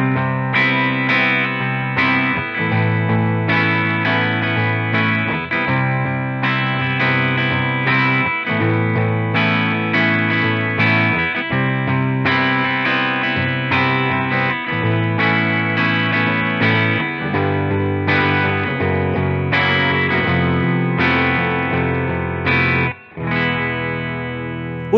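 Electric guitar played through AmpliTube's 'American Tube Vintage' amp simulation: chord phrases with held low notes, each phrase broken by a short gap every few seconds, stopping shortly before the end.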